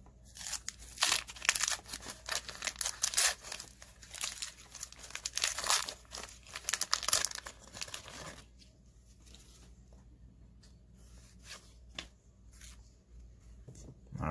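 The wax-paper wrapper of a 1990 Donruss baseball card pack is torn open and crinkled for about eight and a half seconds. Fainter, scattered crinkles and clicks follow as the pack is finished off.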